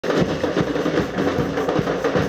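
Batucada samba percussion group drumming a dense, steady beat.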